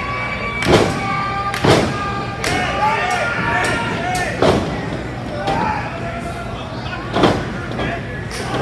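Strikes landing in a pro-wrestling ring: several sharp smacks a second or more apart, the loudest about a second in and near the end, with spectators shouting and yelling between them.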